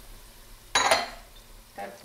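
Chopped onions and garlic sizzling softly in olive oil in a pan, with a short clatter of kitchenware about three-quarters of a second in.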